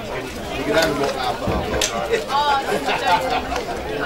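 Indistinct chatter of spectators near the microphone, with one voice raised higher about two and a half seconds in and a single sharp knock a little under two seconds in.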